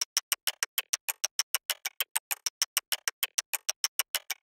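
Sampled top-percussion loop of chopstick and clock-like clicks playing in an even, machine-tight grid of about six hits a second, with some hits accented: a groove that sounds straight and rigid.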